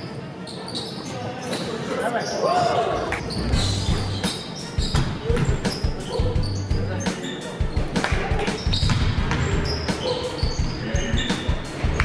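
Basketball game on a hardwood gym floor: the ball bouncing repeatedly and players' voices, with music playing underneath from about a third of the way in.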